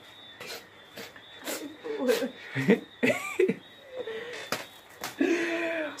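Stifled, breathy laughter in quick separate bursts, with wheezes and gasps, building into a longer drawn-out laugh near the end: a ticklish reaction to an ear being licked.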